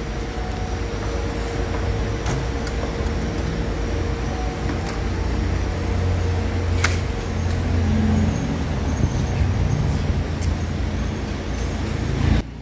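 Steady low rumble of running machines in a coin laundromat. A few sharp clicks are heard as wet laundry is pulled out of a stainless front-loading washer's drum.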